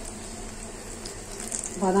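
Pancake batter sizzling steadily on a hot pan over a low flame, a soft even hiss.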